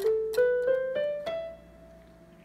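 Electronic keyboard with a piano voice playing the top of an ascending E Phrygian scale (the white keys from E to E): five notes rising about three a second, the last one, the high E, held and fading.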